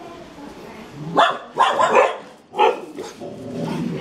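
A dog barking, a few loud barks in quick succession between about one and three seconds in.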